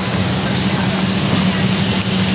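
Steady city street traffic noise: a continuous low engine rumble with an even hiss of passing traffic.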